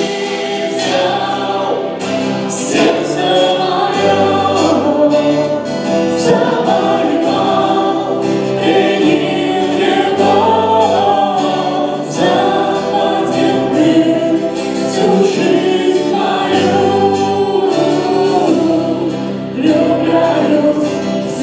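A live worship band performing a song at a church service: female and male voices singing together over acoustic guitar, electric bass, keyboard and drums, with the bass holding long low notes.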